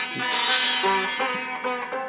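Sitar being played: a stroke at the start rings out and fades, then a run of separately plucked notes follows, some sliding in pitch, with the strings ringing on beneath.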